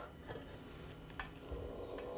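Quiet stretch with a faint hiss and one light knock about a second in, as a pan is inverted onto a plate to turn out a tarte tatin.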